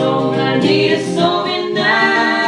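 Live acoustic duo: a man's and a woman's voices singing together over a strummed acoustic guitar, with long held notes.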